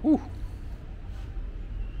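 A man's short 'woo!' of admiration, one rising-and-falling cry, followed by a low steady background rumble.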